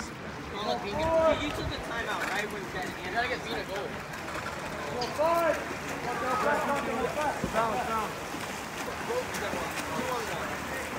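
Indistinct shouted calls from players and spectators, louder about a second in and again about five seconds in, over the splashing of water polo players swimming in the pool.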